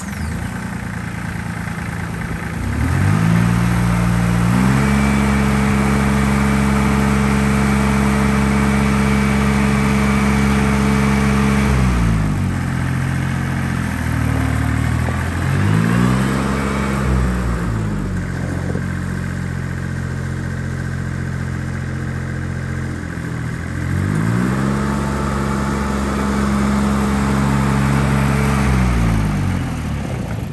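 The small three-cylinder diesel engine of an Allis-Chalmers 5015 compact tractor running as the tractor is driven. Its note rises and falls with the throttle three times, climbing and holding higher before settling back to a lower, steady run.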